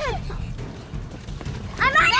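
A young girl's high-pitched squealing voice, gliding down at the start. It dies away in the middle, then rises loud again just before the end.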